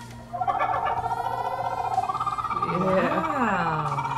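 A laughing kookaburra's call: a rapid, pulsed chuckle that rises in pitch over about two seconds, with a person laughing over it in the second half.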